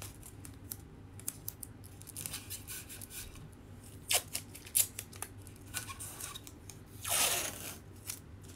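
Blue painter's tape being handled and pressed down, with small crackles and clicks, then a long strip ripped off the roll near the end in one rasp lasting most of a second.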